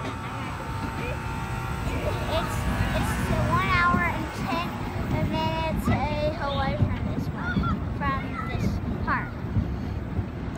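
Amusement-park background of untranscribed voices and shrill yells that rise and fall, scattered through the middle and later part, over a steady low rumble.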